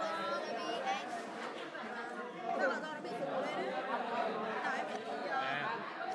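Background chatter: several voices talking over one another, with no single clear speaker.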